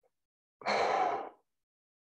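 A man's sigh: one audible breath out, lasting under a second, let go while holding a deep seated hip-and-leg stretch.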